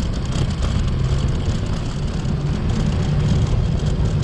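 Steady low rumble of a vehicle travelling along a dirt road, mixed with wind on the microphone.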